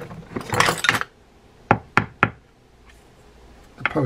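Handling rustle, then three short sharp knocks in quick succession a little under two seconds in: small metal fishing-reel parts and hand tools being handled on a wooden workbench.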